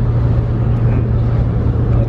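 Ferry engines running steadily: a constant low hum under a wash of even noise.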